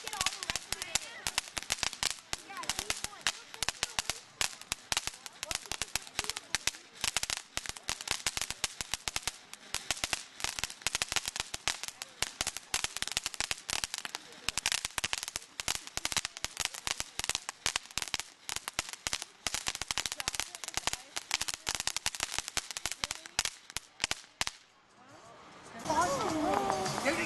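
Ground fountain firework spraying sparks with dense, rapid crackling that stops about a second before the end as the fountain burns out.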